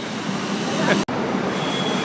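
Steady city street noise of passing road traffic, cutting out for an instant about halfway through.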